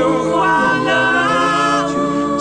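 A cappella vocal group singing, several voices holding and shifting between chord notes with no instruments, in a pause between sung lines of a slow Chinese ballad.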